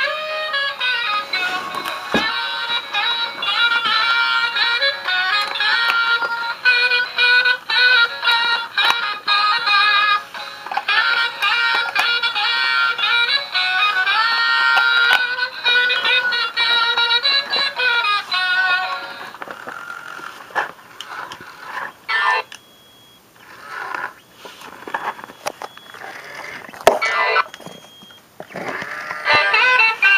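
Animated saxophone-playing Santa figure playing its electronic tune through a small built-in speaker. About two-thirds of the way in the music cuts out, leaving scattered clicks and brief tones, and it comes back near the end: the toy keeps cutting off in the same spot.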